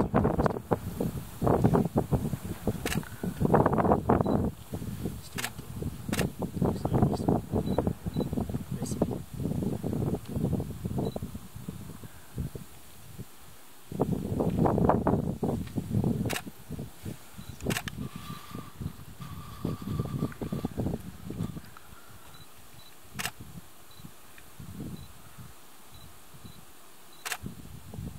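Camera shutter firing single frames, sharp clicks a few seconds apart, about eight in all. Under them are stretches of low, muffled sound that die away in the last several seconds.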